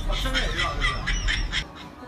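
A woman shouting in startled alarm in Chinese, loud and shrill, on discovering that a 'mannequin' is a real person. The shouting stops sharply near the end.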